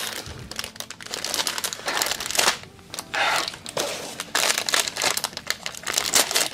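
Clear plastic packaging of a diamond-painting kit crinkling as it is opened and handled. The crinkling comes in irregular bursts, loudest about two seconds in and again just after three seconds.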